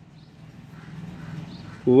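A pause between spoken words, with only faint low background hum. A man's voice starts again near the end.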